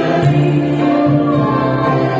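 A woman and a man singing a song together into microphones, amplified through a PA, with live band accompaniment.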